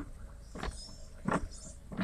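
Low, steady rumble of a vehicle cabin, with two brief faint sounds about two-thirds of a second and a second and a third in.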